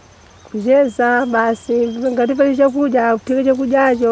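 A woman speaking in a language other than English, in short phrases starting about half a second in, with faint steady insect chirping behind her.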